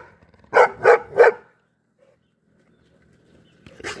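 A dog giving three quick, short barks about a third of a second apart, in the first second and a half.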